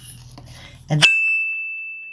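A single high, bell-like ding about a second in, ringing on one steady pitch and fading away over about a second and a half.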